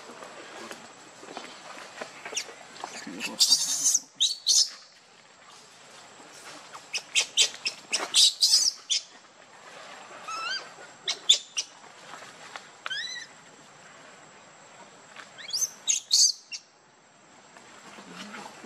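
Baby macaque crying with short, high-pitched squeaky calls, some rising in pitch, coming in about five bursts a few seconds apart.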